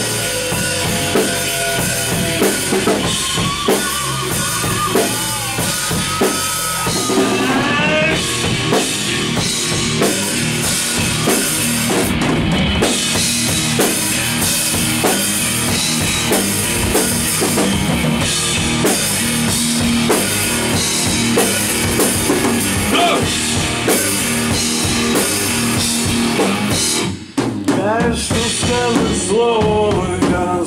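Live rock band playing an instrumental passage: electric guitars over bass and a drum kit, with lead notes that slide in pitch. The band briefly stops about 27 seconds in, then comes back in.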